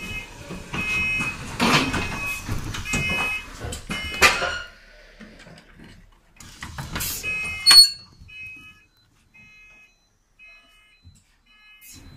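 Bus door warning beeper sounding in repeated short high beeps as the doors of a Dennis Trident double-decker open and close, with bursts of rushing noise in the first half. A sharp click comes just before eight seconds in, and the beeps carry on more faintly after it.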